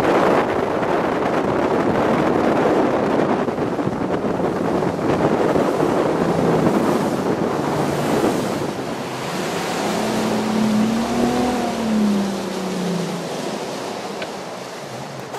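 Wind buffeting the microphone and water rushing along the hull of a Stratos bass boat under way. The outboard motor's drone comes through as a tone that rises and falls near the end, as the rush of wind and water eases.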